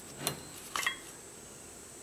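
Faint handling noise of a small winch model being turned in the hands: two light knocks, one shortly after the start and one a little before the midpoint, over a steady faint room background.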